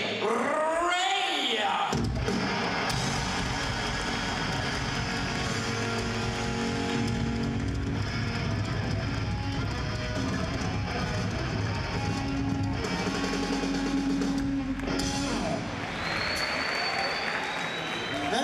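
Live rock band playing a short instrumental passage, with electric guitar through Marshall amplifiers over bass and drums. It starts about two seconds in and stops a couple of seconds before the end, where crowd noise takes over.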